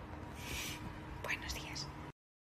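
A woman whispering softly: a breathy hiss about half a second in, then a few quick whispered sounds.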